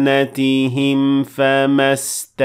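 A man chanting a Quranic verse in melodic tajweed recitation: long, held notes that waver in pitch, broken by brief pauses for breath.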